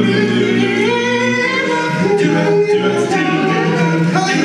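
Male a cappella group singing in close harmony, voices holding chords and moving together in pitch.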